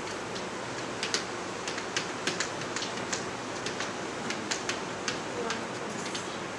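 Steady room hiss in a small hall, broken by faint, irregular clicks and ticks, about a dozen of them, starting about a second in, with a faint distant voice near the end.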